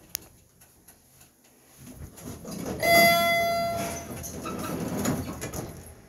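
An elevator chime rings once about three seconds in, a bright tone that fades over about a second. Around it a rumbling noise from the lift swells up and dies away, with a sharp click at the very start.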